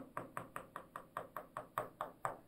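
Pen tip tapping on an interactive touchscreen board, about five quick taps a second, as a row of small dots is drawn.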